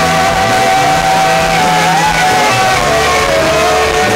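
Saxophone holding a long note that bends about two seconds in, over a loud live rock band with electric guitar.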